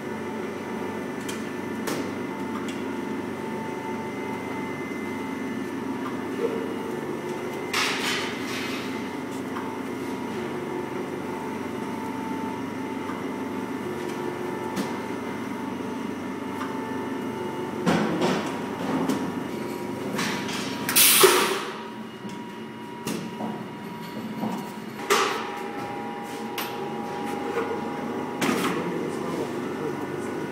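Daub Slim vacuum dough divider running, its built-in vacuum pump giving a steady hum with a few fixed tones. Sharp clunks come from the machine's dividing cycle, mostly in the second half, with one short, louder burst of hiss among them.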